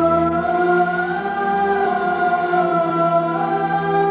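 Orchestral title theme music with a choir holding long notes that step gently upward in pitch.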